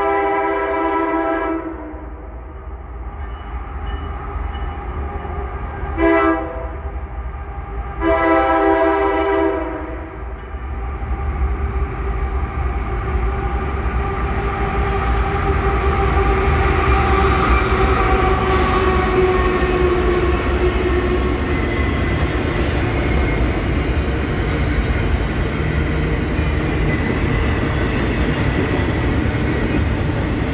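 CSX diesel freight locomotive horn sounding three blasts: long, short, long. Then the locomotives pass with a steady engine rumble whose pitch slowly falls, followed by the rolling of the double-stack intermodal container cars, with an occasional wheel click.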